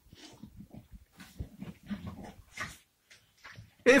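A dog making short, quiet, irregular noises several times a second.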